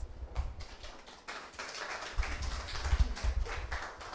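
A small audience applauding, with dense clapping throughout. Low thumps from a handheld microphone being handled come in about halfway through.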